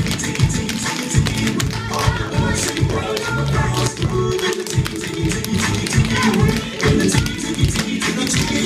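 Tap shoes striking a wooden floor in quick, dense runs of clicks, over recorded music.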